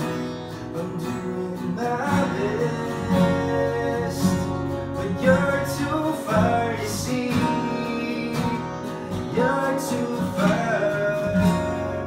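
A small band playing live: two acoustic guitars strumming and an electric guitar, with a man singing the melody over them from about two seconds in.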